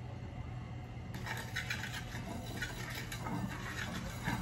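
Spoon rubbing over a tawa (flat griddle), spreading oil in a run of light scraping strokes that start about a second in, over a steady low hum.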